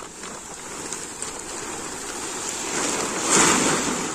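Plastic tarpaulin rustling in the wind, a steady rushing noise that grows and swells near the end as the tarp billows and settles.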